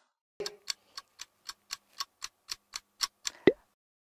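Clock-ticking sound effect, about four ticks a second for roughly three seconds, then a short falling plop near the end. It times the pause for answering a quiz question.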